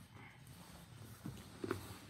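Quiet movement of two grapplers in gis shifting on training mats, faint rustling with a couple of soft knocks near the end.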